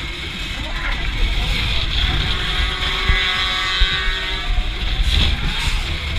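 Wind buffeting the microphone of an onboard camera on a swinging pendulum fairground ride, a heavy gusty rumble. About halfway through, a drawn-out pitched sound rises and then falls over about two seconds.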